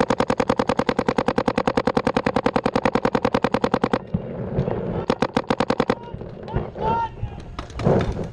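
Paintball marker firing in rapid, evenly spaced strings of about a dozen shots a second: one long string of about four seconds, a short pause, then a second string of about a second.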